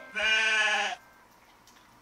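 A single sheep bleat sound effect, held on one pitch for just under a second and cutting off abruptly.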